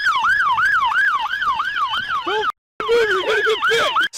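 Police siren on a fast yelp, its pitch sweeping up and down about three times a second. The sound drops out for a moment about two and a half seconds in, then the yelp carries on.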